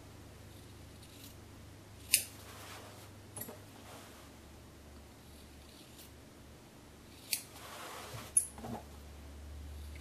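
Scissors snipping through the sewn layers of cotton fabric at a placemat's corners, trimming away the seam allowance. The snips are short and sharp, about five in all, spread out, with two close together near the end.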